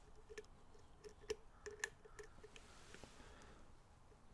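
Faint, small clicks of a steel lock pick working the pin stack of a pin-tumbler lock cylinder under a tension wrench: a scattered handful of clicks in the first two and a half seconds.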